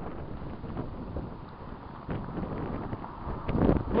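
Wind gusting across the camera microphone, an uneven low rumbling noise that eases a little midway and builds again near the end.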